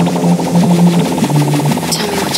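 Tech house DJ mix: a deep synth bass line moving between held notes over a fast repeating rhythm, with little treble.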